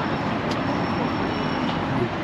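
Steady road-traffic noise from cars circling a cobbled roundabout. About half a second in, a thin, faint high squeal begins and holds for around a second.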